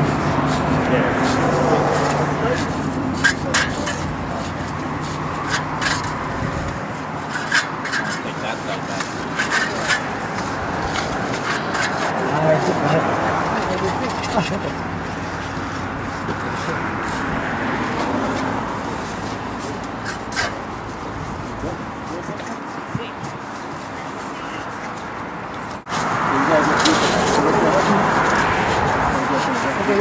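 Indistinct chatter of several people talking at once, mixed with occasional sharp clicks and scrapes of hand trowels working wet concrete.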